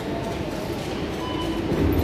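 Wire shopping trolley rolling across a concrete store floor: a steady rattling rumble from its wheels and basket.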